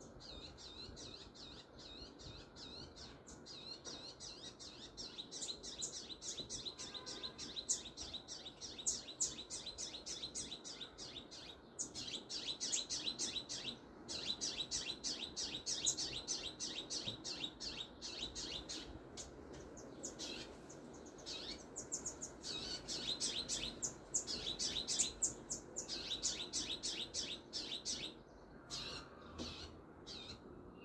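A small songbird chirping in rapid, high-pitched runs of many notes a second, broken by short pauses.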